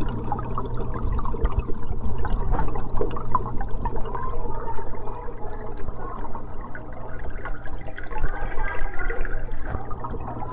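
Aquarium water circulating, bubbling and trickling steadily over a constant low pump hum.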